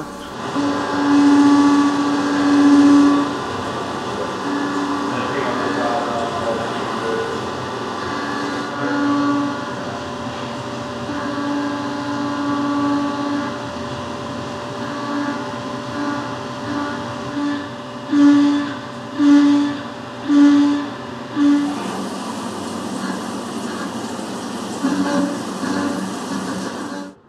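Tormach 770MX CNC mill roughing an aluminum blank with a 3/8-inch end mill under flood coolant, the spindle running at a steady speed. A low cutting hum comes and goes in stretches, with four short, louder pulses of it a little past the middle.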